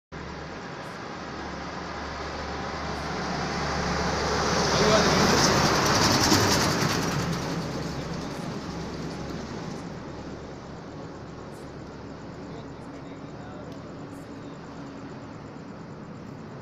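A road vehicle passing close by: its tyre and engine noise swells over the first few seconds, peaks about five to seven seconds in and fades away by about ten seconds, over a steady low traffic hum.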